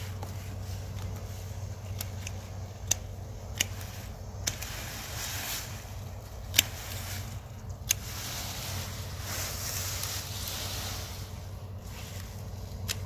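Sweet potato vines and leaves rustling as they are pulled through and gathered, with about five sharp snips of hand pruners cutting the vines, over a steady low hum.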